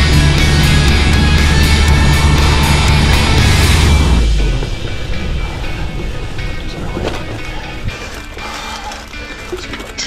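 Loud backing music that cuts off suddenly about four seconds in. Then the rolling and rattling of a gravel bike riding a wet, muddy woodland track, with scattered knocks and clicks.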